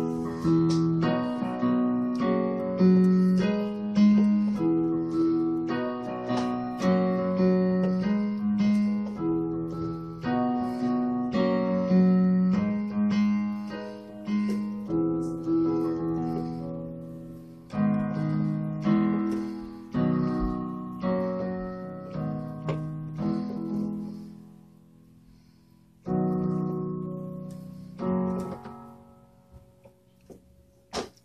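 Yamaha Portable Grand digital keyboard on a piano voice, played two-handed: a slow gospel progression of Abm, E, B and F# chords, each struck and left to ring and fade. The playing stops briefly about three-quarters of the way through, then a few more chords follow and die away near the end.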